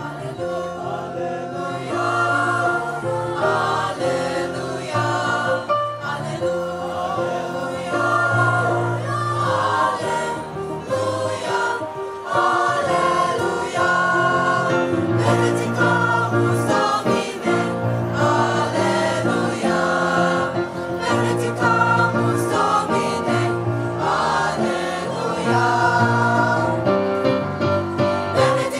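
Mixed-voice high school choir singing together, sustained harmonised lines.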